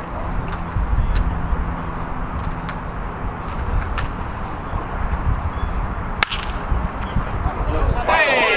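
A baseball bat hitting a pitched ball: one sharp crack about six seconds in, over a steady low background rumble.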